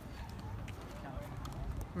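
Faint, irregular taps of a Great Dane's paws and a man's footsteps on brick paving stones as they walk, over a low steady rumble.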